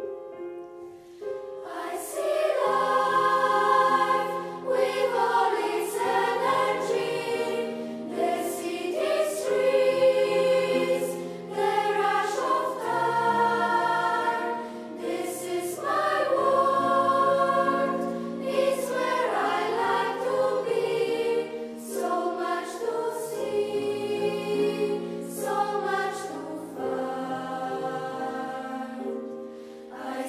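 Youth choir of boys and girls singing a piece in several parts. The voices come in about two seconds in, after a held chord dies away, and sing in phrases that swell and ease every few seconds.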